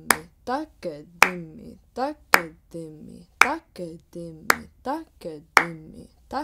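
A woman recites konnakol, the spoken South Indian drum syllables, in an even stream of about three syllables a second. The syllables form a surface phrase of four (ta-ka-di-mi) laid over a beat divided into three. A sharp hand clap marks each beat, about once a second.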